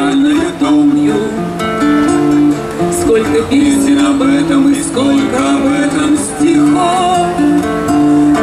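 Live acoustic guitar music played through a PA system, with a melody of held notes over the strummed chords: an instrumental passage of a song, with no singing.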